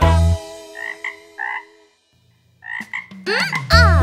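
Cartoon frog croaks: a few short croaks in a pause in the children's song, as a held music chord fades out. The song comes back in near the end.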